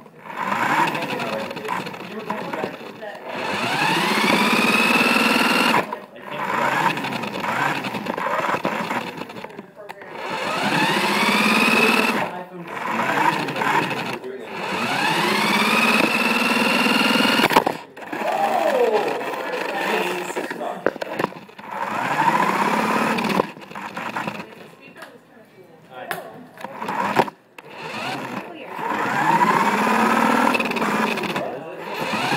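Electric motor and gears of a radio-controlled toy car whining up in pitch in repeated bursts of a few seconds as it accelerates, cutting off between runs.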